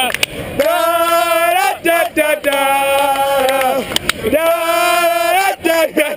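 Men singing loudly close to the microphone, a chant-like tune in three long drawn-out phrases with short breaks between them.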